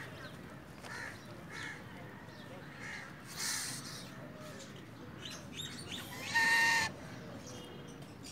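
White domestic goose calling: a few faint short calls, then one loud, clear honk about six and a half seconds in. A brief breathy rush of noise comes about three and a half seconds in.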